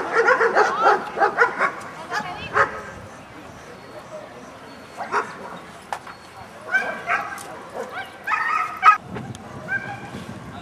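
Dogs barking in a rapid run of short barks over the first couple of seconds, then a few scattered barks and calls in the second half.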